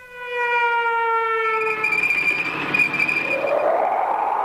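Sound effects played over the training village's loudspeakers: a horn- or siren-like tone that sinks slightly in pitch for about two seconds, then gives way to a rushing noise with a high whine.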